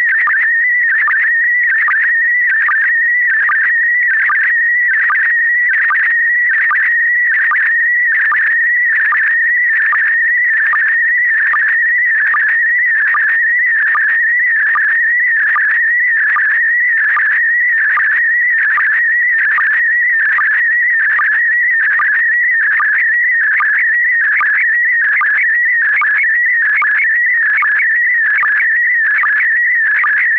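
Slow-scan TV (SSTV) image signal: a continuous warbling whistle near 2 kHz, broken by short regular sync pulses about once a second, as a picture is sent line by line.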